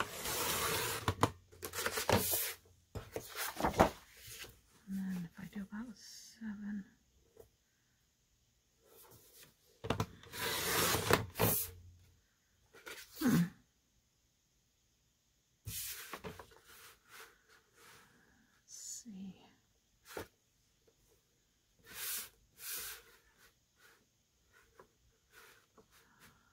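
Paper being cut and handled on a sliding paper trimmer: several scraping swipes of the cutter along the rail, the longest near the start and about ten seconds in, with paper sliding and rustling in between.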